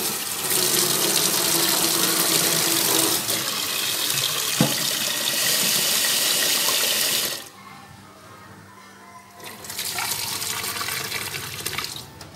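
Kitchen tap water running into a metal pot as mung beans are rinsed in it, with one short knock near the middle. The stream stops for about two seconds after the halfway point, then runs again.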